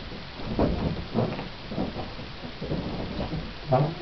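A string of low, rumbling thumps, about one every half second.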